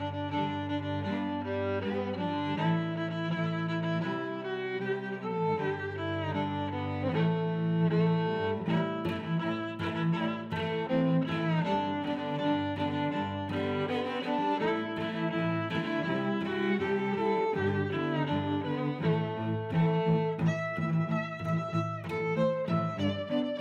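Background music led by bowed strings (violin and cello), with held notes changing every second or so.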